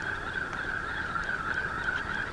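Steady, high-pitched droning of an insect chorus that wavers slightly but keeps going without a break.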